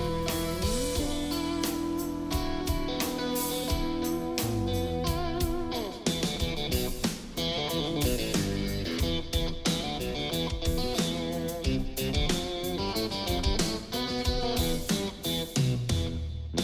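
Live electric rock trio of electric guitar, bass guitar and drums playing an instrumental passage. At first the guitar holds and bends notes. From about six seconds in, the band plays a busy driving rhythm with drums and cymbals.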